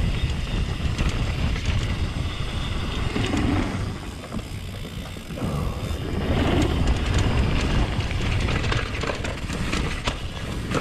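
Mountain bike riding fast down a dirt trail: continuous tyre and rumble noise over dirt and rocks, with the clicking rattle of the bike's chain and parts, easing briefly about four seconds in before picking up again.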